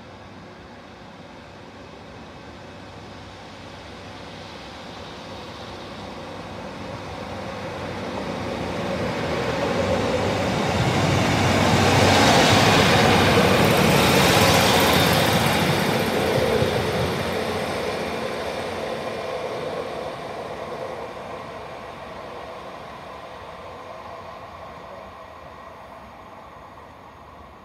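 Northern Class 155 diesel multiple unit running through the station without stopping. The diesel engine and wheels-on-rails noise grow as it approaches, are loudest about halfway through as it passes, then fade away as it runs off.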